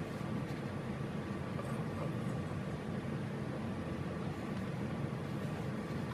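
Steady low hum of room background noise, like a running air handler, with a few faint soft ticks as a paperback is handled.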